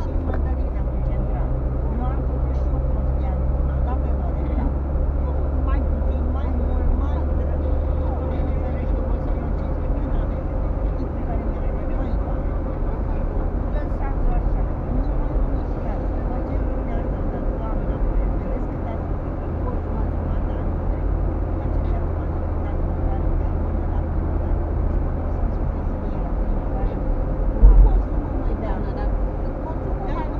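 Car driving on the road, heard from inside the cabin: a steady low rumble of engine and tyres, with one sharp loud thump near the end.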